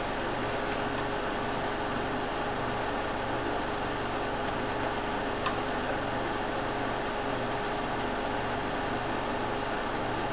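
Steady background hum and hiss with a low, evenly repeating throb underneath, and one faint click about five and a half seconds in.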